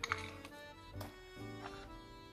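Soft background instrumental music with long held notes.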